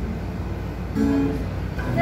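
Acoustic guitar accompaniment played between sung phrases, with a chord struck about a second in; the girl's singing comes back in near the end.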